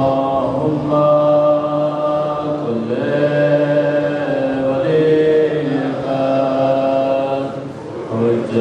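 A man's voice chanting a prayer melodically in long, held notes, phrase after phrase, amplified through a microphone.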